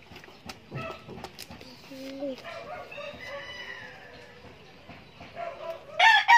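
A rooster crowing in the background: one long call from about two seconds in to about five seconds in. A few light clicks and taps come in the first second or so.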